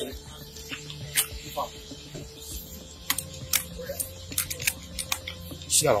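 Irregular sharp clicks and taps over a low steady hum: handling and rubbing noise on a body-worn camera as its wearer moves.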